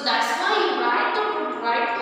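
Speech only: a woman talking continuously.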